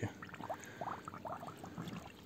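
Water gurgling and bubbling at a homemade floating pool skimmer, in a string of short rising blips, as the pump starts drawing surface water into it.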